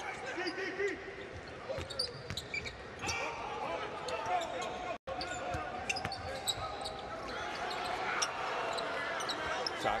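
A basketball dribbling on the court amid the steady murmur of an arena crowd during live play. The sound drops out for an instant about halfway through.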